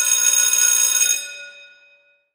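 Electric school bell ringing loudly, then stopping about a second in and ringing out, the bell marking the change of period.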